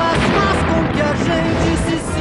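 Cartoon opening theme music in an instrumental stretch between sung lines, with a noisy rush of a fire and explosion sound effect mixed over it.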